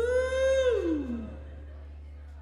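A live rock band ending a song: one held note slides down in pitch and fades out just over a second in, leaving a low steady hum.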